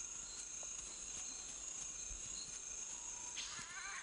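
Tropical forest ambience: a steady high insect drone, joined near the end by wavering, warbling animal calls.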